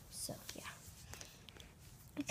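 Faint whispered speech with a soft hiss near the start, followed by a few small clicks over low room tone.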